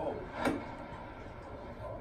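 A golf iron striking the ball: one sharp click about half a second in, heard through a television's speaker.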